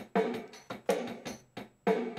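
A learning digital keyboard's built-in rhythm pattern playing: a drum beat with short chord stabs, broken by a brief gap near the middle.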